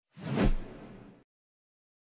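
Whoosh transition sound effect that swells to a low hit about half a second in, then dies away within the next second.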